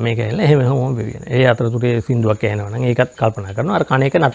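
A man speaking Sinhala, with a faint steady high cricket trill behind his voice.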